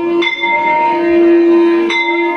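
A bell struck twice, about 1.7 s apart, each strike ringing on, over a steady held musical note.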